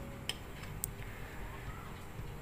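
Two faint light clicks about half a second apart, from the small ceramic spice bowl and its spoon being set down on the table, over low room noise.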